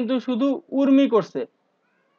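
Only speech: a lecturer's voice speaking Bengali for about a second and a half, then stopping.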